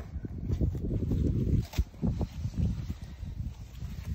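Irregular low rumble on the microphone, swelling twice, with a few short clicks in the middle, while a wild goat's carcass is turned and its hide worked with a knife.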